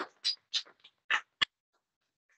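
Scattered hand claps from a small audience, thinning out and stopping about a second and a half in.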